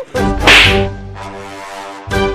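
A comic slap sound effect: one loud, sharp whip-like crack about half a second in, over background music.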